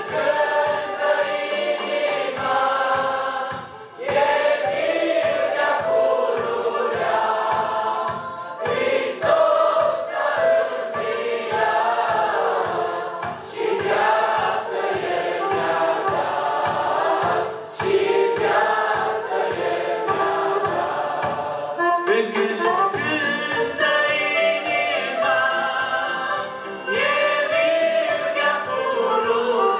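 Church praise group singing a gospel hymn in chorus with instrumental accompaniment and a steady beat.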